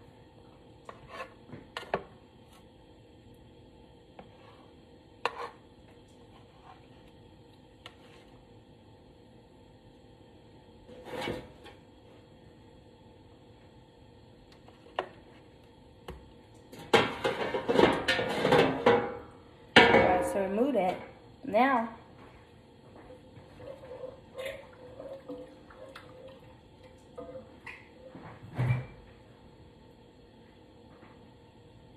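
A spatula scraping and knocking against a metal baking pan as food is moved and shaped in it: scattered single clinks, then a busier stretch of clattering about seventeen to twenty-two seconds in.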